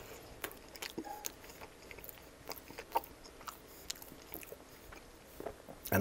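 Close-miked chewing of a bite of pizza crust: soft, irregular crunches and wet mouth clicks.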